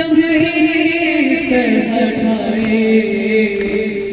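A young man's solo voice chanting a noha, a Shia lament, amplified through a microphone, in long held notes that step down in pitch about halfway through.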